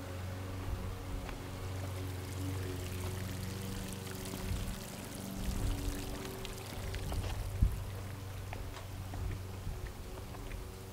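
Swimming pool water steadily pouring and trickling. A single sharp knock comes about seven and a half seconds in.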